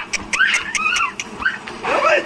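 Ground firework crackling with a quick string of sharp pops, mixed with short high-pitched rising and falling cries.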